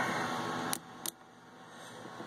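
Two sharp clicks about a third of a second apart as a brass quick-connect fill-tube fitting is pushed onto a hydraulic steering helm fitting.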